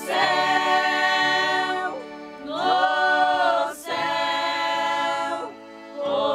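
A choir singing slow, long-held chords. There are three phrases, each about a second and a half to two seconds long, with short breaks between them.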